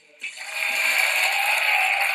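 Studio audience applauding, swelling in about a quarter second in and then holding steady.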